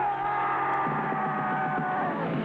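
Electric guitar amplifier feedback: a steady, sustained high tone with fainter tones above it, over amplifier hum. A rougher low rumble comes in about a second in.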